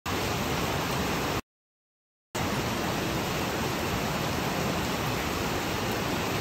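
Heavy rain falling as a steady, even hiss. The sound drops out to complete silence for about a second, about one and a half seconds in, then resumes unchanged.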